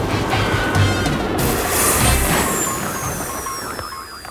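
Cartoon rocket descending and touching down, a rushing, rumbling thrust noise under bouncy background music, fading as it settles. About two seconds in, a slow falling whistle starts.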